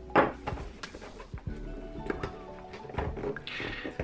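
Quiet background music with short clicks and scrapes from a cardboard toy box being handled and its flap pried open, the sharpest click just after the start.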